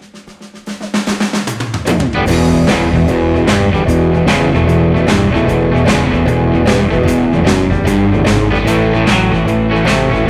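A drum fill leads in, then a full band comes in about two seconds in: an Epiphone Les Paul electric guitar playing a fast shuffle blues riff over a backing track with drums, at about 150 BPM.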